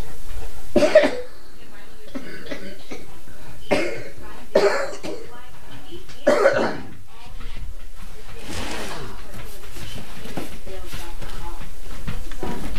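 An elderly person coughing: about four separate coughs spread over several seconds.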